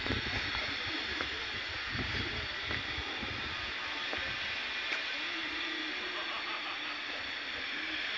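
Steady hissing outdoor background noise with a low rumble, and a faint voice in the distance about six seconds in.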